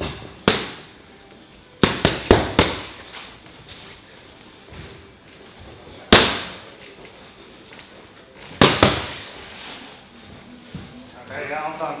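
Boxing punches landing sharply on focus mitts: a single punch, then a fast four-punch combination, another single shot, and a quick one-two.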